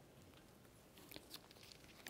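Near silence: room tone, with a few faint short rustles and ticks in the second half, as of paper being handled.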